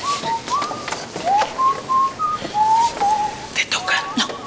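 Someone whistling a short tune of about nine clear notes, several of them sliding upward into the note.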